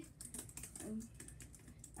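Laptop keyboard being typed on: a run of light, irregular key clicks.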